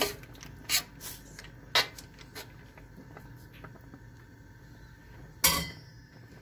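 Kitchen clatter: a few sharp knocks and clacks of pots and utensils, the loudest near the end.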